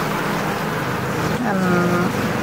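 A steady mechanical hum with an even rushing noise, like a running motor, with a person's voice starting about one and a half seconds in.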